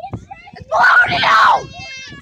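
A boy screams loudly for about a second, rough and strained, with short bits of voice before and after.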